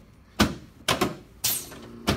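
Three sharp knocks about half a second apart from a chiropractor's hand thrusts down on a patient's chest as he lies on an adjusting table.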